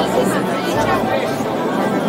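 Crowd chatter in a large hall: many people talking at once, with background music's bass line underneath.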